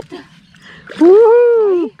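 A woman's long wordless cry, about halfway in, that rises and then falls in pitch and lasts just under a second.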